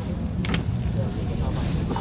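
Steady low engine hum, with faint crowd voices and a sharp knock about half a second in.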